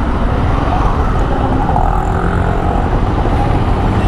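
Motorcycle riding slowly through city traffic, heard from the rider's camera: a steady low rumble of the Honda CBR250R's single-cylinder engine, mixed with road and traffic noise.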